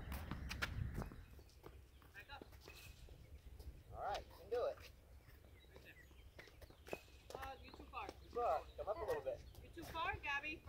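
Tennis balls struck by rackets and bouncing on a hard court, short sharp pops at irregular intervals.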